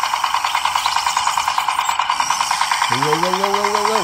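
Toy mini tractor's small electric motor and gears running, a steady buzz that pulses rapidly and evenly as its wheels spin in the mud. Near the end a drawn-out voice call rises and falls over it.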